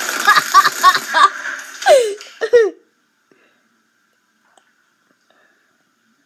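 A loud, rough scraping noise with clicks and knocks, played back from the watched video, with giggling over it. It cuts off about three seconds in, leaving silence.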